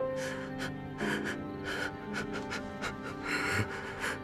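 A man crying hard: a run of short, gasping sobs, the loudest near the end, over soft sad background music with long held notes.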